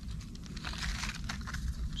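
Faint crinkling and small irregular ticks of PTFE thread tape being wrapped around the threads of a brass 3/8-inch male-to-male flare fitting, over a low steady rumble.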